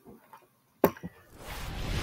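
A few faint clicks, then one sharp computer click that starts the video playing, followed by the highlights video's intro audio rising in as a swelling hiss.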